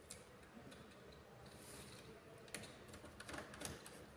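Faint clicks and taps of a connecting wire being handled at the input terminals of a digital trainer kit: one sharp click about two and a half seconds in and a few more near the end.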